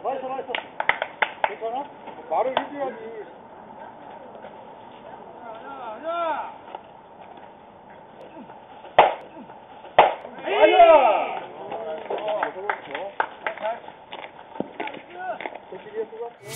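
Field sound of an amateur baseball game: players' voices calling out across the field, scattered sharp clicks, and two sharp knocks about nine and ten seconds in, followed by a drawn-out shout.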